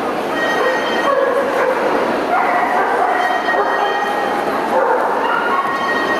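A dog barking and yipping, with drawn-out whining cries, over the steady chatter of a crowd in a large, echoing hall.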